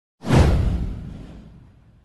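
A cinematic whoosh sound effect with a deep low tail. It swells up sharply about a quarter of a second in and fades away over about a second and a half.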